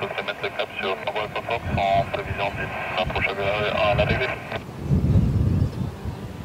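Air traffic control chatter over a handheld radio, thin and tinny, that cuts off suddenly about four and a half seconds in. A low rumble of the landing Dassault Falcon 50's jet engines swells near the end.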